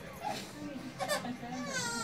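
A baby starting to cry about one and a half seconds in: a high-pitched, wavering wail among adult voices.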